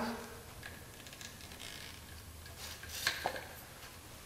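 Quiet handling of a metal mic stand and its screw-on tripod adapter as the screw is cinched down, with faint ticks and a couple of light clicks about three seconds in.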